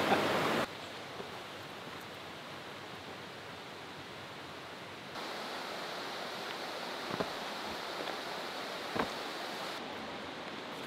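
Rushing creek water, loud for the first moment, then cutting suddenly to a much quieter steady hiss of distant water and forest air. The hiss rises slightly about halfway through, and two faint knocks come near the end.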